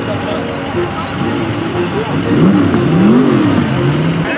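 A vehicle engine revving up and back down twice, about two seconds in, over a steady hum of engines and people's voices.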